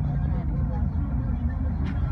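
Low, steady rumble of an idling vehicle engine heard from inside the car, with faint voices in the background. A short click comes near the end.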